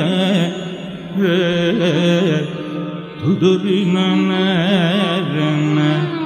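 Carnatic classical vocal music: a male voice singing a melody full of wavering, oscillating ornaments and slides, with accompaniment. There is a short break about three seconds in, followed by a rising slide into the next phrase.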